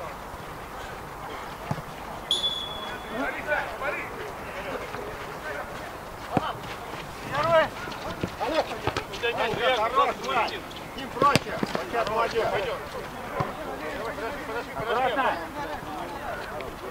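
Players calling and shouting to each other on an outdoor football pitch, with a few sharp ball kicks. A short, steady whistle blast sounds about two seconds in.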